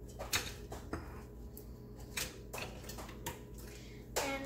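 A chrome two-slice toaster being loaded with bread and its lever pressed down: about six light clicks and knocks spread over a few seconds.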